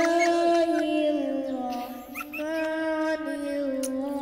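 A young boy chanting in long, drawn-out melodic notes: one held note, a breath about two seconds in, then a second long note a little lower in pitch.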